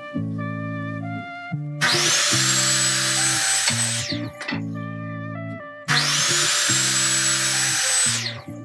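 Ryobi 10-inch sliding compound miter saw cutting a wooden trim board, twice: each run starts about two and six seconds in with a rising whine as the blade spins up and lasts about two seconds. Background music with plucked notes plays underneath.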